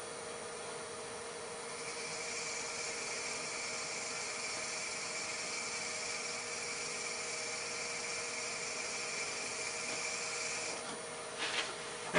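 Wood lathe running with a steady hum while a drill bit held in a dedicated hand handle is fed freehand into the spinning wood blank. From about two seconds in until near the end the cutting adds a steady hiss and a thin whine.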